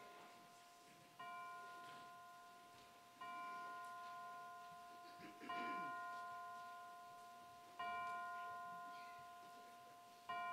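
A bell-like chime struck four times, about every two seconds, at the same pitch each time. Each stroke rings out and slowly fades before the next.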